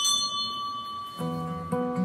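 A struck bell-like chime rings and fades. About a second in, an acoustic guitar starts picking notes in a steady rhythm.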